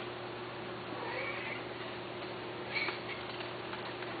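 Persian cat giving a short meow about a second in, then a second brief cry near three seconds, over a steady low background hum.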